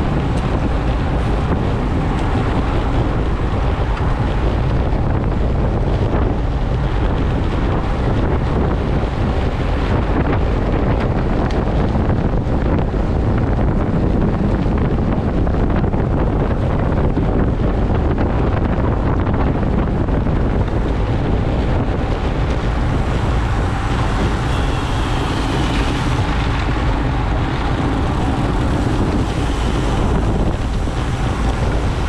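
Wind buffeting the microphone of a camera on a road bike moving at about 30–36 km/h: a loud, steady low rumble that runs without a break.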